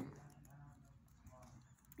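Near silence: room tone with a faint steady low hum and a faint trace of a voice.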